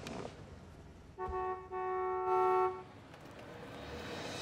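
Car horn honking twice: a short toot about a second in, then a longer held blast.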